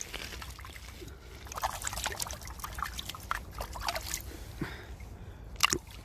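A shard of old pottery being swished and rinsed by hand in shallow river water: irregular splashing and trickling, with one sharper splash near the end.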